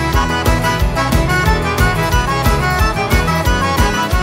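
Cajun band music played live: accordion and fiddle carry the tune over a steady beat, with no singing.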